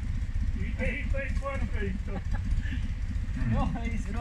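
A Steyr-Puch Haflinger's air-cooled flat-twin engine runs low and steady as the vehicle crawls down a steep, rocky off-road track, with voices talking over it.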